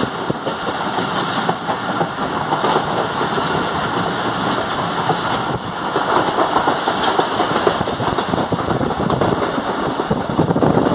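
Passenger train running at speed, heard from an open carriage doorway: a steady rush of wind and wheel-on-rail noise, growing a little louder about six seconds in.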